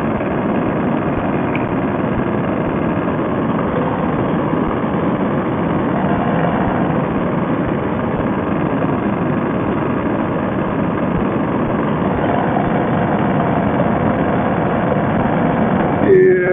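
Fresh Breeze paramotor trike's Monster two-stroke engine and propeller running steadily in flight: a dense, unbroken drone with no change in pitch.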